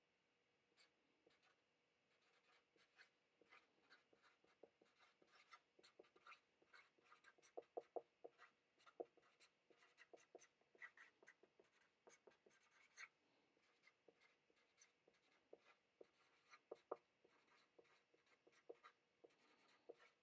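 Faint squeaks and taps of a Sharpie marker writing on a white board, in many short strokes that come thickest about halfway through.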